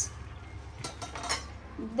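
Faint kitchen sounds: two light clinks of cookware and utensils, about half a second apart, over a low steady hum.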